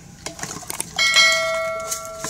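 Subscribe-button notification sound effect: a few light clicks, then a bright bell ding about a second in that rings on and slowly fades.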